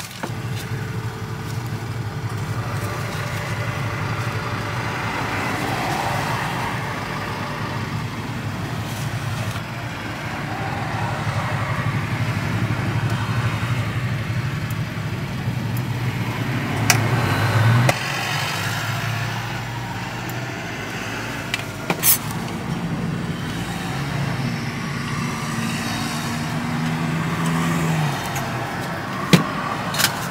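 Steady low engine rumble of a running motor vehicle, with a few sharp clicks.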